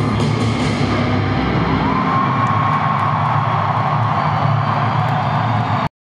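Live rock band finishing a song in an arena, recorded from the stands: drums and cymbals stop about a second in. Then a single high sustained note slides up and holds over the hall's wash of sound until the recording cuts off just before the end.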